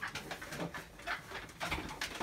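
Faint, stifled laughter and breathy giggles from a few people, with a slightly louder burst near the end.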